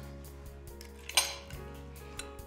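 A single sharp clink of kitchenware about a second in, over soft background music with held notes.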